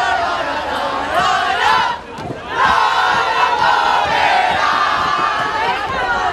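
A group of people shouting and chanting together in loud, overlapping voices. The shouting breaks off briefly about two seconds in, then resumes.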